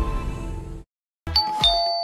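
Ident music fades out in the first second, followed by a brief silence. Then a two-note doorbell ding-dong chime sounds, the second note lower.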